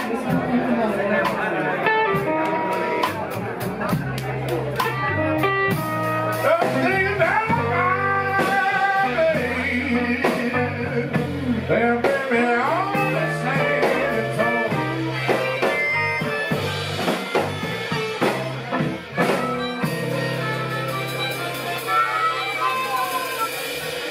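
Live electric blues band playing, with electric guitar, electric bass and drum kit, and bent notes in the lead line. The band settles into a held final chord with cymbal over the last few seconds as the song ends.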